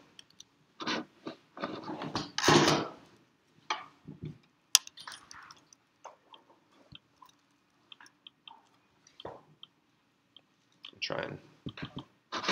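Faint scattered clicks and taps from a laptop's trackpad and keys, with one sharper click about five seconds in and a low thump a few seconds later. Brief muffled talk comes before the clicks and again near the end.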